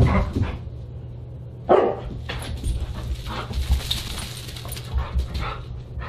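Siberian husky barking and yipping in play: short, sharp barks, the loudest at the very start and about two seconds in, with weaker ones after, among low thuds.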